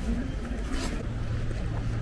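Faint voices of people talking over low rumbling outdoor noise, with a steady low hum setting in about a second in.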